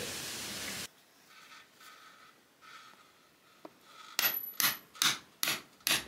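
Hammer striking a steel chisel into a rough stone wall, five sharp metallic blows about two a second, chipping out a recess in the masonry to seat a floor beam.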